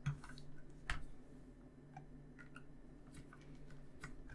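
Faint clicks and ticks of a small precision screwdriver driving a tiny self-tapping screw into plastic model parts: two sharper clicks in the first second, then scattered light ticks.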